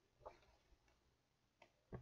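Near silence with a few faint soft ticks: a hand pressing and shifting on the open pages of a paperback coloring book, the loudest tick just before the end.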